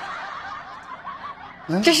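A woman's voice: soft chuckling, then she starts speaking just before the end.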